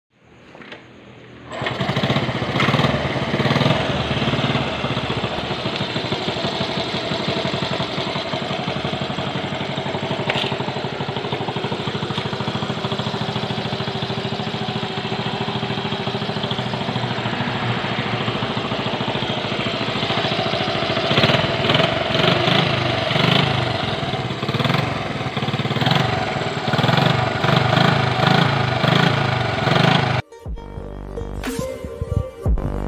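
Honda Monkey minibike's small four-stroke single-cylinder engine running, coming in suddenly about a second and a half in. Its sound swells and drops unevenly in the last third, as it is revved.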